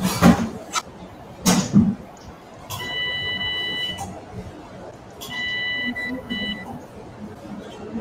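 Electrosurgical (diathermy) generator's activation tone sounding twice, each a steady electronic beep of a little over a second, while the surgeon cauterises tissue. A few brief sharp sounds come before it in the first two seconds.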